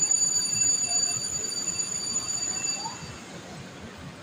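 A sustained, piercing high-pitched squeal that holds one steady pitch, then fades out about three seconds in, over faint background noise.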